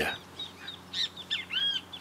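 Small birds calling: a few short, high chirps, then one longer arched call about a second and a half in.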